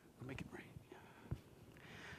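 A man's faint, whispered muttering, with a soft thump a little past the middle.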